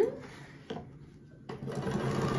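Sewing machine free-motion quilting stops, leaving a pause of about a second and a half with two faint clicks, then starts stitching again near the end.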